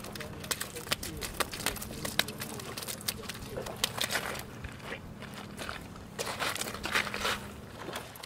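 Scattered clicks and crunches of gravel shifting underfoot and of fishing gear being handled at the water's edge, over a faint steady hum.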